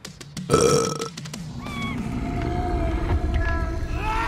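Dramatic sound effects: a sudden loud burst about half a second in, then a low rumble of flames that builds steadily, with short wailing cries over it.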